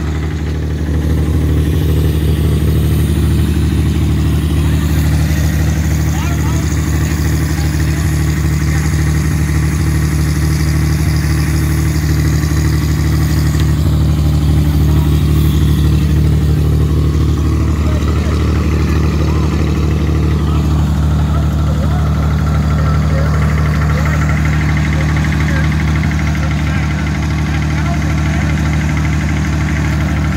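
1930s White Superpower truck tractor engine idling steadily, running for the first time in 30 years.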